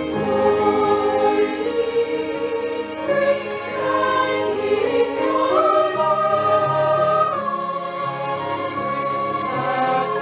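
Mixed choir of young voices singing in harmony, holding long sustained chords, with one note held for nearly two seconds past the middle.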